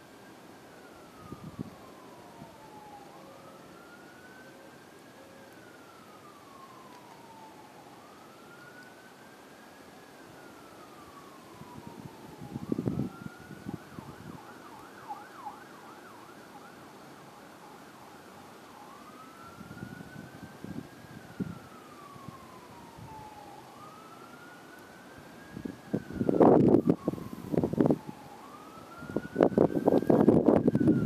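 Electronic siren wailing, rising and then slowly falling in pitch about every four to five seconds, with a short stretch of faster warbling about halfway through. Wind gusts buffet the microphone now and then, loudest near the end.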